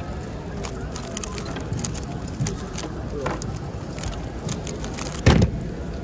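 A 3x3 speedcube being turned very fast through a sub-5-second solve: a rapid, dense clatter of plastic clicks, ending about five seconds in with a loud thump as the cube is put down and the hands slap the stackmat timer to stop it. Background chatter of a crowded hall runs underneath.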